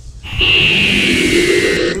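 Recorded radio-programme audio starting to play back from the computer: a loud hiss with a high tone sliding slowly down, lasting about a second and a half. It stops just before a man's voice begins.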